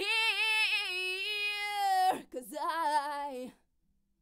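Recorded unaccompanied female vocal played through a PreSonus ADL 700 channel strip's equalizer while its EQ knobs are being turned. One long held note of about two seconds opens with vibrato, then a shorter sung phrase stops about three and a half seconds in.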